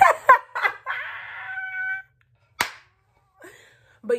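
A woman's short bursts of laughter and squealing, broken by two sharp smacks: one just after the start and a second about two and a half seconds in.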